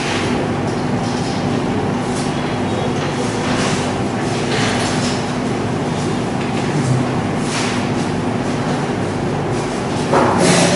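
Whiteboard duster wiping a whiteboard in a series of short rubbing strokes, roughly one a second, over a steady background hum.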